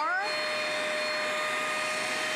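Hoover Spotless portable carpet spot cleaner's suction motor running steadily, a constant whine over a hiss, as its hand tool sucks cleaning solution out of a carpet stain.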